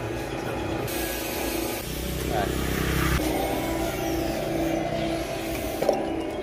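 A 2 HP stainless screw-press juicer running, its motor giving a steady hum, with a louder rushing hiss from about a second in until just before the end.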